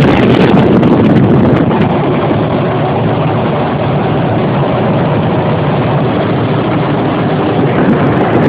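Tractor-trailer truck driving down the highway: steady engine and road noise from the cab, with wind buffeting the microphone for the first second or so.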